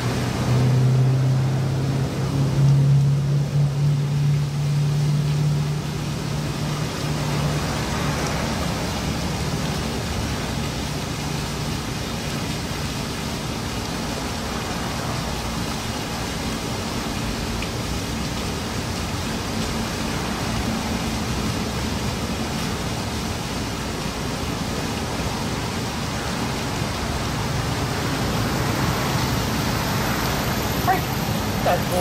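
Steady outdoor traffic noise, with a vehicle engine's low hum loudest over the first several seconds, then fading back into the general roar.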